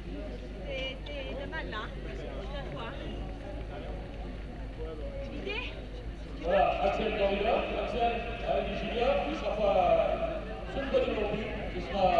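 Speech only: people talking at low level, then a man's voice, much louder, from about six and a half seconds in.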